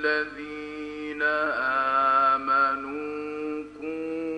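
A male reciter chanting the Quran in the melodic, drawn-out mujawwad style, holding long, slightly wavering vowels. There is a short break about a second in, and a fresh held note begins near the end.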